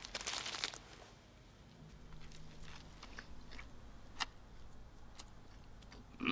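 A man biting into a hamburger, a loud bite in the first second, then chewing it with quiet mouth sounds and a few small clicks.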